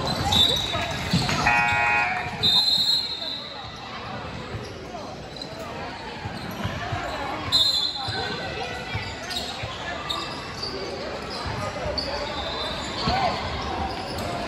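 Indoor basketball game sounds: a basketball dribbling on a hardwood court, sneakers squeaking in a few short high chirps, and indistinct calls from players and spectators in a large gym.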